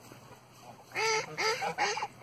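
Canada goose giving a quick run of about four short honking calls, starting about a second in.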